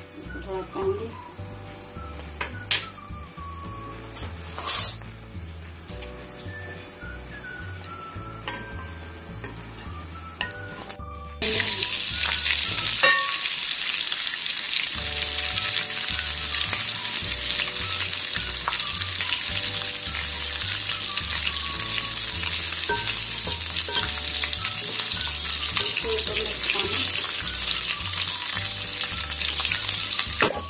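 Garlic paste frying in hot oil for a tadka, stirred with a wooden spoon. For the first ten seconds or so there are only low frying and a few spoon clicks; about eleven seconds in the sound turns suddenly into a loud, steady sizzle.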